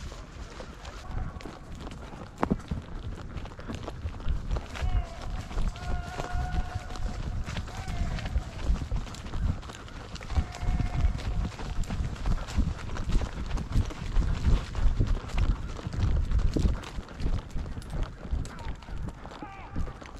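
Hoofbeats of a ridden horse heard from the saddle, a run of irregular low thumps. A person gives a few drawn-out calls between about 5 and 11 seconds in.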